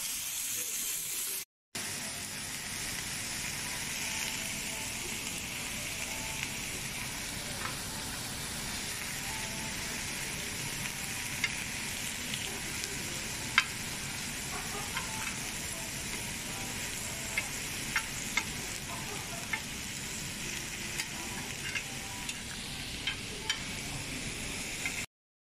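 Meat and vegetables sizzling steadily on a cast iron jingisukan dome grill plate, with tongs clicking against the pan now and then, most often in the second half.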